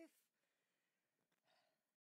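Near silence: the last trace of a held sung note fades out at the very start.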